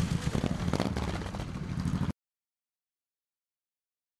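A low rumble with scattered clicks and knocks, which cuts off abruptly to dead silence about halfway through.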